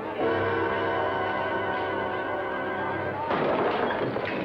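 A loud dramatic film-score chord, held for about three seconds, then cut off by a sudden noisy crash near the end.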